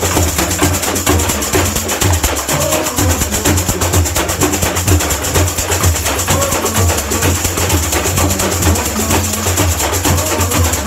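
Samba percussion section playing a steady groove: metal chocalho jingle shakers keep a continuous fast shimmering hiss, tamborims click sharply on top, and surdo bass drums beat underneath.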